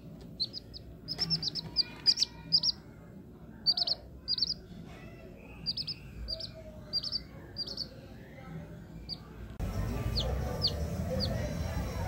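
Newborn chicken chick peeping: short high chirps in quick runs of two to four with short pauses between. Near the end the background turns noisier and a few more falling chirps follow.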